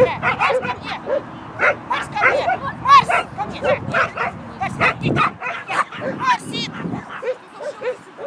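Shetland sheepdog barking over and over in quick, high-pitched yips, excited while playing with a puller ring toy.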